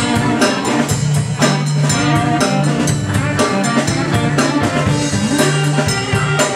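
Live rock band playing an instrumental passage: electric guitar leads over bass guitar and a drum kit keeping a steady beat.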